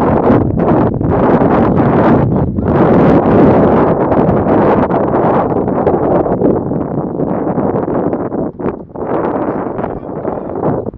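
Wind buffeting the camera's microphone: a loud, gusty rumble that surges and dips unevenly, easing somewhat over the last few seconds.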